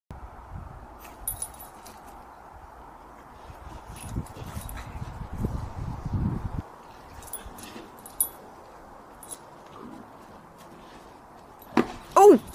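A Bullmastiff and a French Bulldog puppy at play: a metal collar tag jingles briefly now and then, with a low rumbling sound in the middle and a sudden sharp dog sound near the end.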